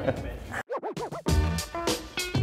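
Background music briefly drops out about half a second in for a short record-scratch effect, a few quick up-and-down pitch sweeps, then comes back with a steady beat.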